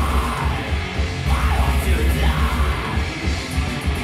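Heavy metal band playing live: distorted electric guitars and drums, with harsh yelled vocals through the first half.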